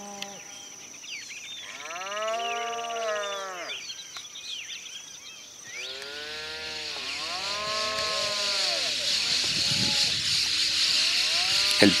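Cattle lowing, two long drawn-out calls about two and six seconds in, with small birds chirping high above.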